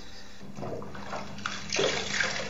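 Bathwater splashing and trickling as a sponge is squeezed out over an arm in a tub. The water comes in irregular spurts that grow louder toward the end.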